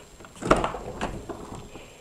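A single clunk about half a second in, followed by a few fainter clicks and soft rustling of parts being handled.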